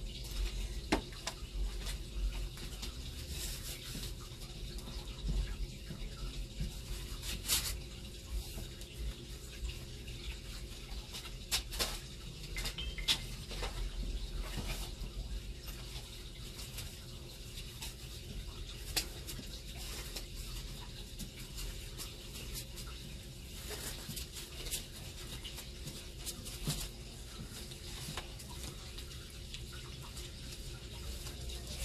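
Scattered light clicks and small knocks at irregular moments over a steady low hum and rumble.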